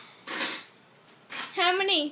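Laughter: two short breathy puffs of laughing, then a voiced laugh near the end.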